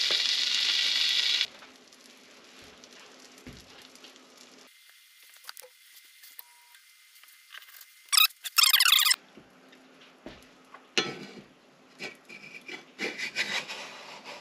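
Pancake batter sizzling in hot butter in a cast iron skillet, cutting off about a second and a half in. Then quieter scraping and tapping of a wooden spatula under the pancake's edge, with a short high squeal a little past halfway.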